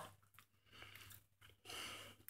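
Faint chewing of a cookie with the mouth closed, and a soft breath near the end; otherwise near silence.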